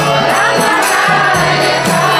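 A large group singing a devotional kirtan chant in chorus, with jingling hand percussion striking a steady beat about four times a second.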